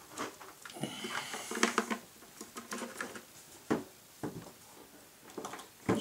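Irregular light clicks and rustles of handling: the aileron servo lead plugs are being pushed together and the wires worked in a small room.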